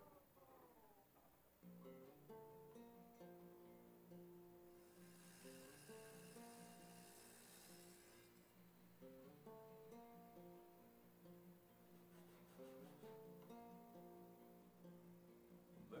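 Faint acoustic guitar picking a slow melody, single notes, beginning about two seconds in.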